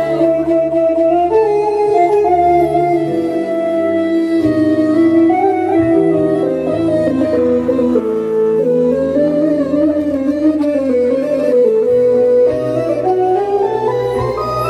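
Electronic arranger keyboard playing a slow, stepping solo melody over sustained low notes, with no drum beat; the melody winds gradually downward and climbs again near the end.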